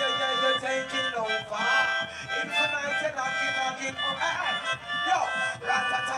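Live dub reggae: a melodica plays a melody of held, reedy notes over the backing rhythm.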